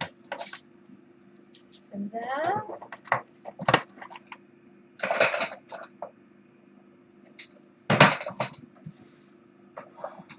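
Kittens playing with plastic toys: irregular clatter, clicks and knocks, with two louder rattling bursts about five and eight seconds in. A short pitched call about two seconds in, over a steady low hum.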